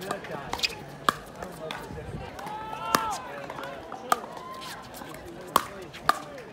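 Pickleball rally: paddles striking a hollow plastic pickleball with a string of sharp pops, roughly one a second, the loudest about a second in, about three seconds in and shortly before the end.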